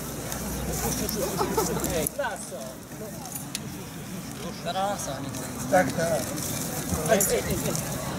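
Several people talking outdoors, mostly in Polish, with a short call of "Został! Został!" about a second in.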